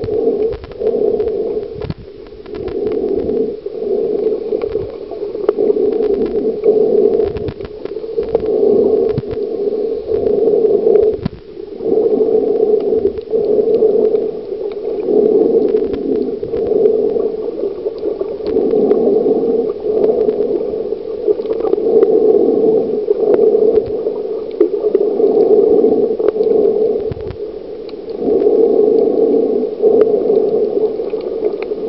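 Muffled underwater noise picked up through a waterproof compact camera held under water: a dull rushing that swells and fades every second or two, with scattered small clicks and knocks.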